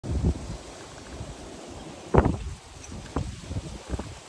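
Wind buffeting the microphone in low, gusty rumbles, with a sharp knock about two seconds in and a softer one about a second later.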